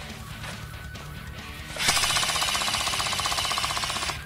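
Airsoft SAW light machine gun firing one full-auto burst of about two seconds, a fast even rattle that starts a little before halfway and stops abruptly, over background music.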